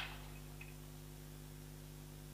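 Quiet room tone with a steady low electrical hum.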